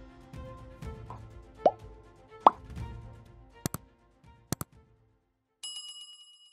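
Background music with two quick rising 'plop' sound effects, then two pairs of sharp clicks as the music drops out. A bright high chime begins near the end.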